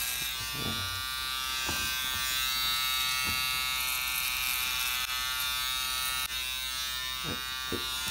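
Electric hair clippers running with a steady buzz while cutting short hair up the back of a child's head.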